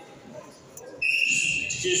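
Referee's whistle blown about a second in, one sustained high blast that signals the wrestlers to start grappling; voices follow in the hall.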